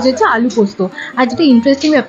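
A woman's voice speaking continuously.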